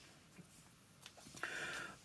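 Near silence: quiet room tone, with a faint, short sound near the end.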